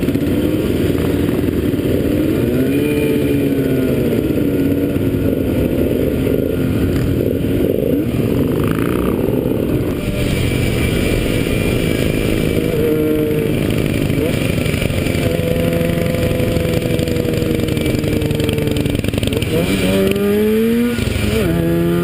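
Motorcycle engine running under way, heard from the rider's seat, its pitch rising and falling with the throttle and climbing in steps through the gears near the end, over steady wind noise.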